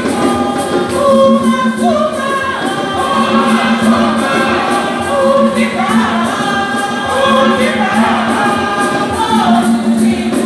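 Church choir of mostly women's voices singing together, with a steady clapped beat about two to three times a second.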